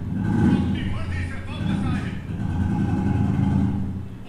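Dialogue from a dubbed TV drama playing over a heavy, steady low rumble in the soundtrack, which swells about half a second in and again near the end.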